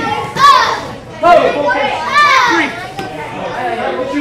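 Children's voices shouting: three loud calls, each rising then falling in pitch, about a second apart.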